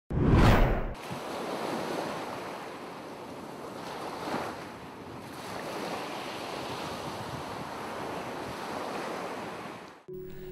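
Ocean surf sound effect: a loud rushing whoosh in the first second, then a steady wash of waves that swells briefly about four seconds in.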